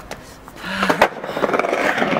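Skateboard on concrete paving: wheels rolling with a rapid rattle, and a sharp clack of the board hitting the ground about a second in.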